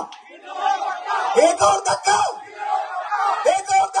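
A man shouting slogans through a microphone and loudspeaker, with a crowd shouting back, in loud bursts about a second and a half in and again near the end.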